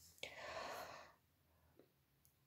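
A short, faint breath out by a woman, lasting under a second.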